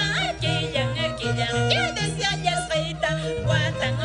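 Andean carnaval huayno music: a woman singing high with a wavering voice over violin and Andean harp, the harp's bass notes moving steadily underneath.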